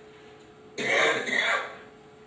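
A man clearing his throat close to the microphone: a loud, noisy burst in two parts starting about three-quarters of a second in and lasting under a second.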